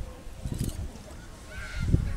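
Gusty low rumble of wind buffeting the microphone, with a short honking call near the end.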